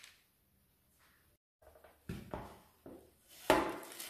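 Near silence at first, then a few short knocks and clatters of a metal baking tray being handled, the loudest about three and a half seconds in.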